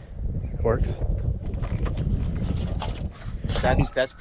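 Wind buffeting the microphone, a steady low rumble, with brief snatches of a voice about a second in and again near the end.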